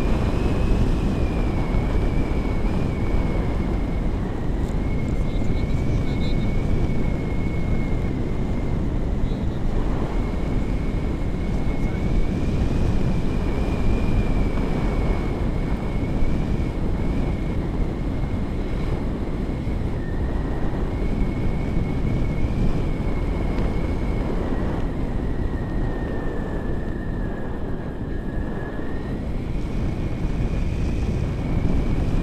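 Airflow rushing over the action camera's microphone in a tandem paraglider flight, a steady loud rush of wind. A thin, high tone runs through it, wandering slowly up and down in pitch and sagging lower near the end.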